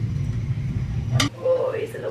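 A steady low rumble with a wooden spoon knocking once against a steel pot. The rumble cuts off suddenly and a woman starts talking.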